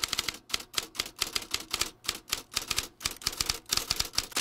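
Typewriter keys clacking rapidly in uneven runs of keystrokes with brief pauses between them, a typing sound effect.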